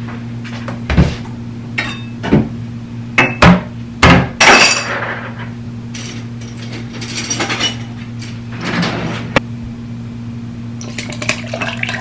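Glassware and dishes clinking and knocking on a kitchen counter as a glass is set out for ice water, with the loudest ringing clinks about three to four seconds in and a quick run of lighter clinks near the end. A steady low hum runs underneath.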